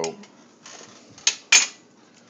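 Stainless steel Cornelius keg lid being handled: a soft rustle, then two short metallic clinks about a quarter second apart, a bit over a second in, the second louder.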